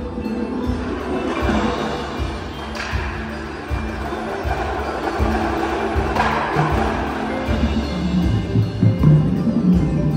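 An indoor percussion ensemble plays its show music, with repeated low pulses and sustained pitched notes underneath. Two crashes ring out, about three and six seconds in.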